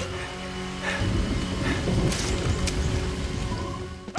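Steady rain with a low rumble underneath, over faint background music.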